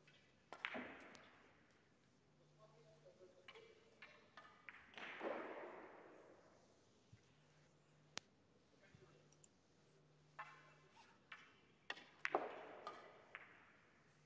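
Near silence: faint room tone in a billiard hall with scattered soft clicks and knocks. Three of them are a little louder and trail off briefly: about half a second in, around five seconds in, and about twelve seconds in.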